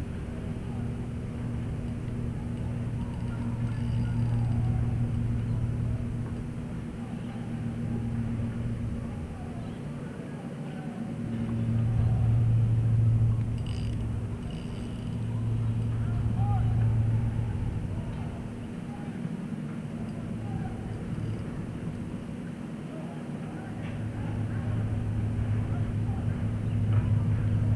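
Low steady engine hum of a boat motor at a constant pitch, swelling and fading every few seconds.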